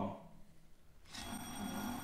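Quiz buzzer sounding about a second in: a steady, high electronic tone over a hiss, held for about a second.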